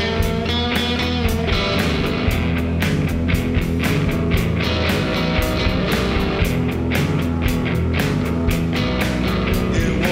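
Live rock band playing an instrumental passage without vocals: electric guitars, electric bass and a drum kit, with cymbals and drums struck on a steady beat.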